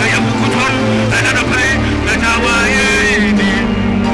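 A man singing a worship song into a handheld microphone over backing music with a steady low bass.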